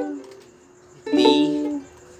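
Ukulele strummed by hand: a G chord rings out and fades, then about a second in a D chord is strummed once and rings for under a second before it is cut short.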